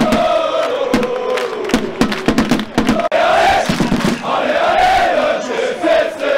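A terrace of football supporters singing a chant together, a wavering sung tune carried by many voices, with sharp beats keeping time under it. The beats thin out briefly about halfway through, then the singing swells again.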